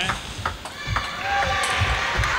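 Table tennis rally: the celluloid-type plastic ball clicking sharply off the rubber-faced bats and bouncing on the table, several quick strikes in a row.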